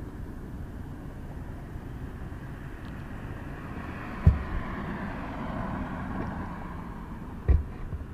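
Traffic noise with a vehicle passing on the road ahead: its tyre noise swells through the middle and then fades. Two short low thumps, one near the middle and one near the end.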